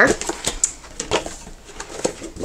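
A spiral-bound paper planner being opened by hand: its cover and pages rustle, with a few short taps and clicks of handling.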